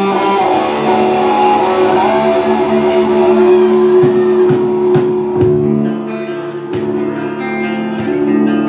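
A live rock band opens a song: electric guitars ring out sustained chords over bass, and drum and cymbal hits come in about halfway through.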